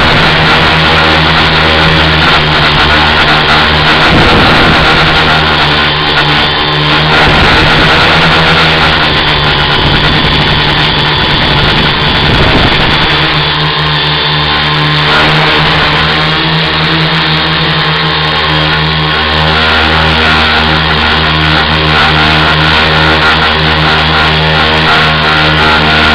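Tricopter's electric motors and propellers running steadily, heard through the onboard camera's microphone, the pitch shifting briefly about six and twelve seconds in.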